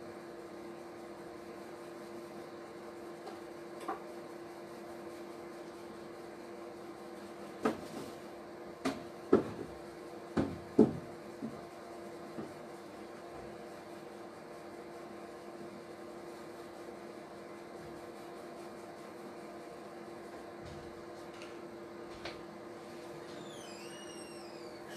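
A steady hum runs throughout. Six or so short, sharp knocks are clustered between about eight and eleven seconds in.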